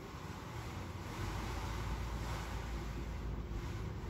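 Wind buffeting the microphone: a steady low rumble with a hiss over it, growing stronger about a second in.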